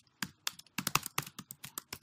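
Typing on a computer keyboard: a quick, irregular run of about a dozen keystrokes.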